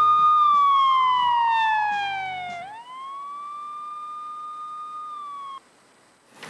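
Siren-like tone in a TV crime segment's title sting. Music fades out under it while the tone glides down for about two seconds, swoops back up and holds, then cuts off suddenly near the end.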